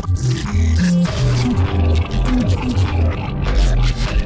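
Electronic music played live on an Elektron Octatrack mk2 sampler, with a deep bass line stepping between notes under sharp drum hits.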